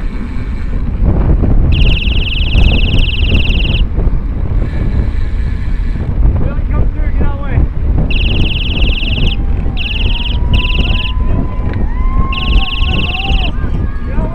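Wind buffeting the microphone of a moving bicycle camera, with a high buzzing noise that comes and goes in short bursts, about five times, and scattered voices calling out in the second half.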